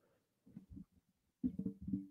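Handling noise from a microphone boom arm being grabbed and repositioned, picked up through the mic: a few faint low knocks, then louder bumps with a low ringing tone near the end. The arm is not holding the microphone in place.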